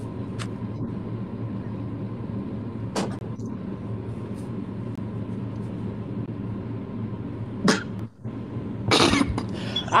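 Steady low hum of background line noise with a faint steady tone, broken by a few short clicks and a brief louder noisy burst about a second before the end.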